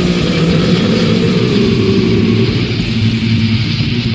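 Black/death metal from a lo-fi demo tape: heavily distorted guitars and bass holding a sustained low chord, thick and steady, with no vocals.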